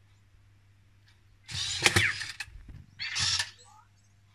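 Anki Vector robot's small drive motors whirring in two short bursts as it moves on its treads, the first about a second and a half in and the second about three seconds in. The first burst carries a brief gliding electronic chirp.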